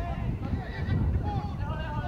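High-pitched children's voices shouting and calling out during play, several voices overlapping, over a steady low rumble.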